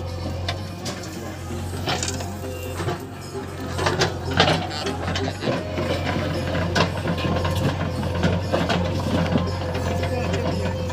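JCB 3DX backhoe loader's diesel engine running steadily under metallic clanks and knocks from the bucket and arm as it digs soil and dumps it into a tractor trolley. The loudest knocks come about four seconds in.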